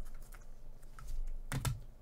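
Light clicks and taps of a hard plastic card case handled in gloved hands, with a louder cluster of clicks about a second and a half in.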